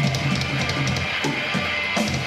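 Live rock band playing loudly: distorted electric guitar and bass over a drum kit, with repeated drum hits and cymbal strikes.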